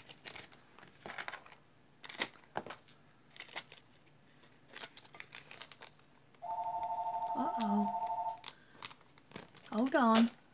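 Clear plastic bag crinkling and rustling in the hands, with small clicks. About six and a half seconds in, a telephone rings for about two seconds, a steady pulsing two-tone ring, from an incoming robocall.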